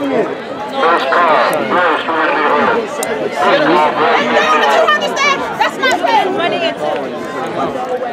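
Overlapping chatter of several people talking at once close by, with laughter about four seconds in.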